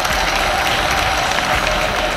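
Large stadium crowd applauding, a dense steady patter of many hands clapping at once, greeting the declaration that the games are officially open.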